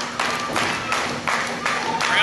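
A few slow, separate hand claps over a low crowd murmur.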